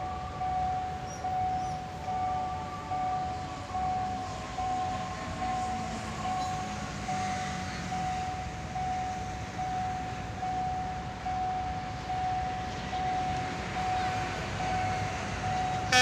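Level-crossing warning alarm sounding: one electronic tone repeating in short pulses, a little more than once a second, while a train approaches. A train horn starts right at the end.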